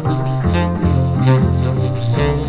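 Spiritual jazz recording: an acoustic double bass plays a repeating low figure under sustained chords.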